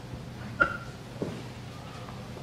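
A pause in a woman's talk: low room tone with two brief, faint vocal noises from a person, like a breath catch or throat sound, about half a second and a second and a quarter in.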